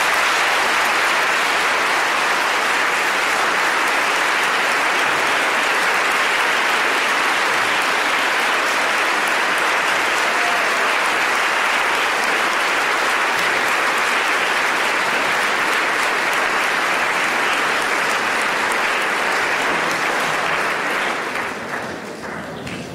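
A large audience applauding steadily, dying away near the end.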